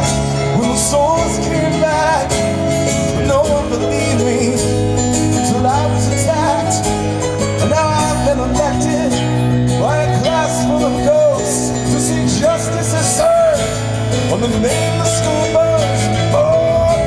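Live band playing a passage of a song on acoustic guitar, electric bass and keyboards, with a wavering melody line over a steady bass.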